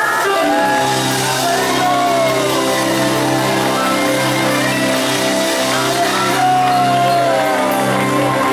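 Live band music: a steady held chord with a lead melody line sliding up and down over it.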